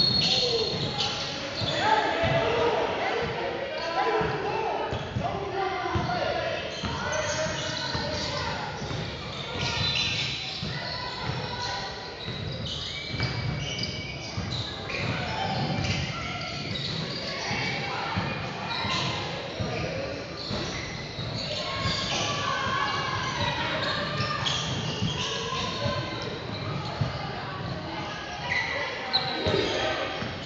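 Basketball game in a large gym: the ball bouncing on the hardwood court as it is dribbled, mixed with players' and spectators' voices, all echoing in the hall.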